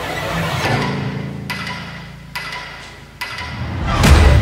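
Eerie background music: a held low tone swells and then fades out, cut by three sharp knocks just under a second apart.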